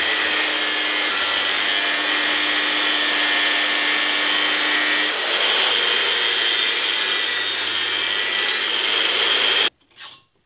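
Abrasive cut-off wheel cutting through the steel of an old circular saw blade, a steady, loud grinding whine whose pitch shifts about halfway through. The cutting stops abruptly just before the end, leaving a few faint clicks.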